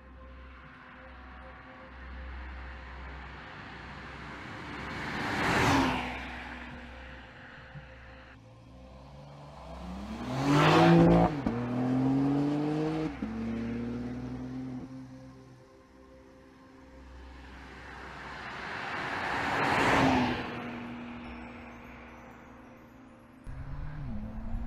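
BMW X4 M's twin-turbo inline-six driving past three times, each pass swelling and fading. The middle pass, about eleven seconds in, is the loudest, with the engine note rising under acceleration.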